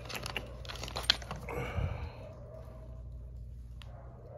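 Small metal screwdriver bits clicking and rattling against each other and the plastic bit case as they are picked through by hand. A cluster of sharp clicks comes in the first second, then a short rustle, and one more click near the end.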